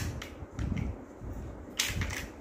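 Chunky plastic toy building blocks clicking against each other as they are handled and fitted together: a few sharp clicks, one at the start and the loudest near the end.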